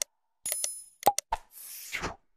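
Sound effects of an animated subscribe-button graphic: mouse-click pops, a short bell ding with a ringing tail, a quick run of three clicks about a second in, then a whoosh near the end.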